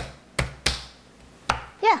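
Palm striking the flat of a small kitchen knife laid over a radish on a wooden butcher block, crushing the radish: four sharp smacks, the last after a gap of nearly a second.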